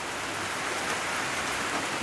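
Heavy rain bucketing down, a steady, even hiss of drops.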